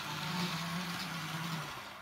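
Model train's small electric motor running, its wheels rolling on the track: a steady hum with a light hiss that dies away shortly before the end.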